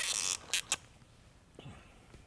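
Dry-erase marker writing on a whiteboard: one longer scratchy stroke, then two short quick strokes.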